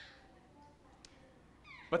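Near silence: room tone with a faint click about a second in. A man starts speaking again just before the end.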